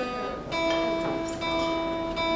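Acoustic guitar being tuned: a single string plucked about half a second in and left ringing as one steady note.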